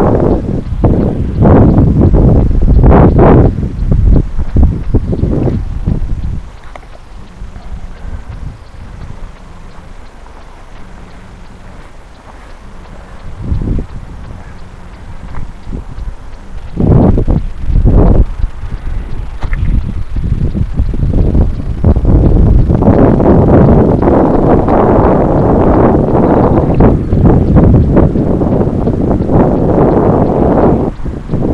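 Wind buffeting the microphone in gusts, dropping away for several seconds near the middle and blowing hard again through the last third.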